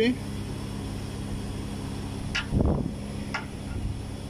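Steady low hum of running air-conditioning machinery, with a held tone under it. Two light clicks and a brief low bump come about two and a half to three and a half seconds in.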